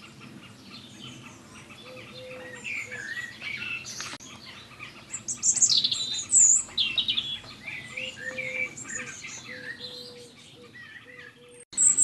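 Songbirds singing, with many short chirps and whistled phrases through the whole stretch, and a single sharp click about four seconds in.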